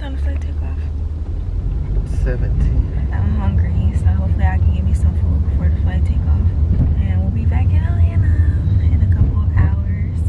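Steady low rumble of a car in motion, heard inside the cabin, with a voice talking on and off over it.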